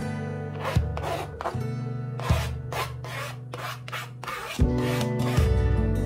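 A kitchen knife scraping chopped cilantro, in short repeated strokes at about three a second, stopping about four and a half seconds in. Gentle acoustic guitar music plays underneath.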